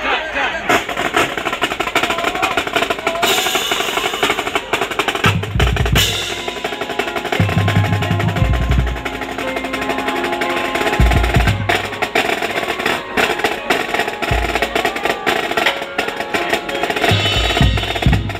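Marching band playing, led by its drumline: snare drum rolls and rapid strikes throughout, with heavy bass drum hits in clusters every few seconds and held notes from other instruments underneath.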